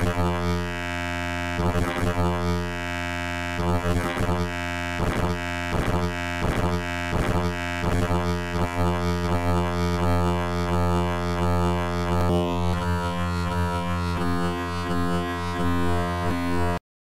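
Software wavetable synthesizer (UVI Falcon's wavetable oscillator) holding one low sustained note. A pulse-shaped multi-envelope on the wave index makes its tone flare brighter again and again in quick, uneven pulses, about two a second at the busiest.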